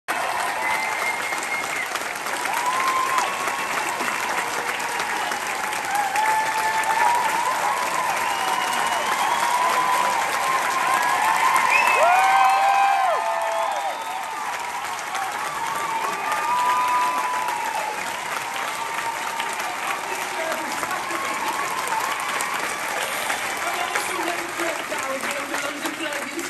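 Theatre audience applauding steadily, with scattered voices whooping and cheering over the clapping. It is loudest about twelve seconds in, then eases off slightly.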